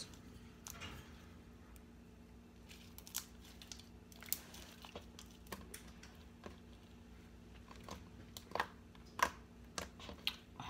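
Crunchy homemade slime being poked and squeezed between the fingers, giving small irregular crackles and pops, with a few sharper pops in the last two seconds.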